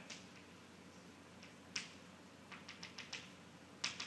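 Chalk tapping against a blackboard while writing: a single sharp tap a little under two seconds in, a quick run of about six taps around three seconds in, and a few more near the end.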